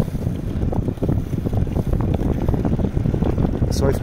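Wind buffeting the microphone of a camera on a moving bicycle: a steady, loud low rumble.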